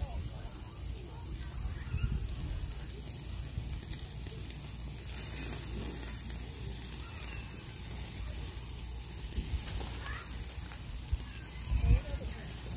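Meat sizzling on the wire grate of a charcoal grill, a steady hiss, over a strong low rumble, with a couple of louder knocks.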